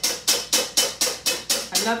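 A wire whisk beating cold heavy cream by hand in a metal mixing bowl. The wires strike the bowl in a steady, rapid clatter of roughly six to seven strokes a second.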